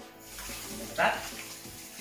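Kitchen tap running into the sink as hands are washed under it, a steady splashing hiss, with a brief voice sound about a second in.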